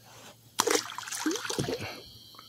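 Water splash as a small catfish is let go and drops back into the water, starting suddenly about half a second in, followed by water trickling and sloshing.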